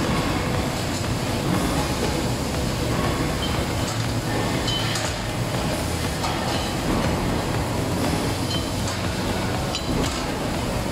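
Steady din of factory machinery running in a metalworking workshop, with a few light knocks of metal parts being handled.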